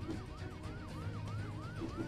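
Police car siren in a fast yelp, its pitch rising and dropping back about three times a second, with low background music underneath.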